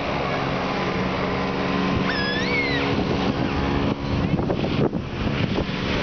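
A Sea-Doo personal watercraft engine running steadily, driving water up a fire hose to a rider's jet boots. A brief high call rises and falls about two seconds in.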